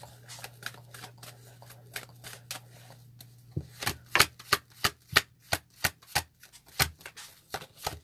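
Fortune-telling cards being handled and laid down one by one on a table: faint scattered card clicks, then from about halfway through a regular run of sharp snaps, about three a second, as the cards are counted out to the chosen number. A low steady hum runs underneath.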